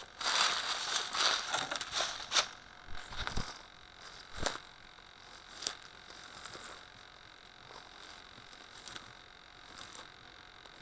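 A radio-controlled model aeroplane coming down into dead bracken and grass: a couple of seconds of rushing and crunching, a few sharp knocks, then only a faint hiss once it comes to rest.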